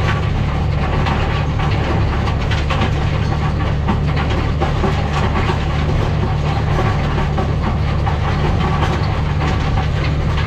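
Massey Ferguson tractor engine running steadily under load, heard from inside the cab, over a continuous clatter of stones and soil rattling through the Kivi Pekka stone picker's rotor.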